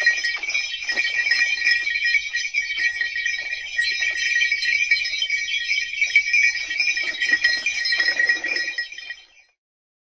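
Harness bells on a passing dog sled jingling steadily, with a softer irregular crunching underneath that grows near the end. The sound fades and stops about nine seconds in.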